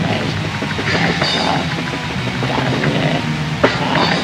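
Raw black metal recording with distorted electric guitars and drums playing dense and loud, with one sharp hit near the end.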